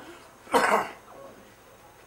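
A man's single short, throat-clearing cough, about half a second in.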